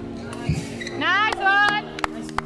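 Court shoes squeaking on the badminton court floor as players lunge and turn, with sharp rising squeals about a second in and a dull footfall thump about half a second in. Music plays steadily in the background.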